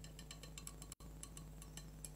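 A quick, uneven run of faint, light clicks and clinks over a steady low hum.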